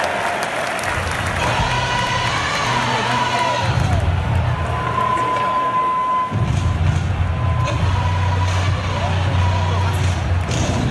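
Music played over a football stadium's loudspeakers, with a heavy pulsing bass that starts about a second in and breaks off briefly just after six seconds, over the noise and voices of a large crowd.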